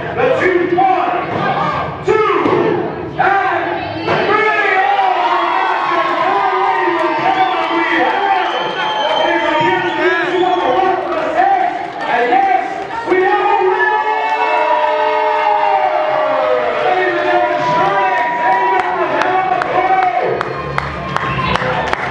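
Crowd of wrestling fans cheering and shouting as a match ends in a pinfall, many voices overlapping, with a couple of sharp knocks in the first few seconds.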